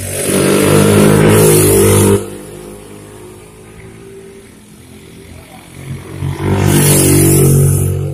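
Motorcycle taxis ridden fast on a steep hill road: two loud passes of a small motorcycle engine revving hard, one in the first two seconds and another near the end, with fainter engine sound between.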